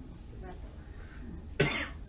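A person coughing once, sharply, about a second and a half in, over a low steady room hum.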